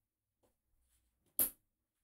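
A female XLR cable plug being pushed onto a male XLR output jack of a Behringer Composer Pro-XL, with faint handling ticks and then one sharp click about one and a half seconds in as the connector seats and latches.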